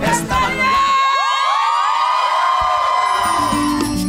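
A crowd of wedding guests cheering and whooping over salsa music. About a second in, the music's bass drops out briefly, leaving many overlapping whoops that rise and fall in pitch.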